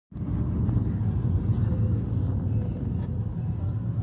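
Steady low road rumble of a car driving, heard from inside the cabin.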